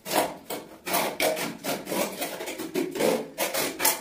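Steel hand trowel scraping and spreading cement mortar over a tiled floor in quick, repeated short strokes.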